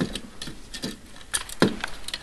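A few light, irregular clicks and knocks from objects being handled, the loudest about one and a half seconds in.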